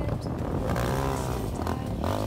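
Quad bike engine revving, its pitch rising and then falling about a second in, as the rider lifts the front wheels into a wheelie.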